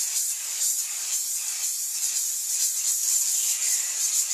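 Aerosol can of spray adhesive spraying in one long, steady hiss.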